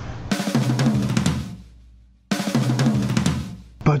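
Drum kit break in a rock song: two short fills of snare, bass drum and cymbals, the first about a third of a second in and the second a little past two seconds, each dying away before the next.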